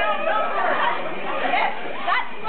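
Several people chattering at once, their voices overlapping into an unintelligible group babble.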